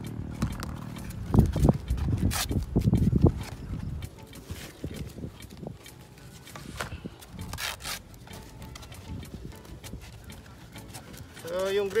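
Wind buffeting the microphone in low rumbling gusts, heaviest in the first few seconds, with sharp crackles of paper and cardboard wrapping being handled as a sheet of skateboard grip tape is unrolled from its tube.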